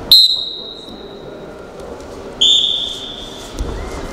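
Two sharp, high referee's whistle blasts starting the wrestling bout: one right at the start and one about two seconds later, each fading away over about a second in the hall's echo. A low thump near the end.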